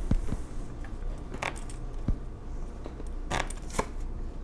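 Oracle cards being handled and a card drawn from the deck: a few short, light clicks and snaps of card stock, the sharpest near the end.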